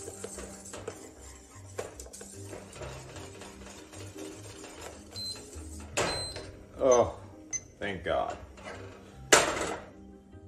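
Spoon stirring and lightly scraping in a metal saucepan of thickening boiled-flour frosting base, over faint background music. In the second half come wavering wordless vocal sounds, then a sharp loud burst near the end.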